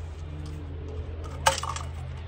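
Arrows clinking together as one is taken up to be nocked: a single sharp clink with a brief ring about one and a half seconds in, over a steady low hum.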